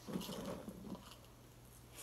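A short, soft rustle about a second long as cheese balls are grabbed from a plastic jar and pushed into an already crammed mouth.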